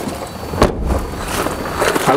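A single heavy thump about half a second in, with low rumble and rustling around it: a Renault Duster's tailgate being shut.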